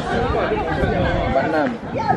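Background chatter: several people talking at once, with a low rumble underneath that drops away a little over a second in.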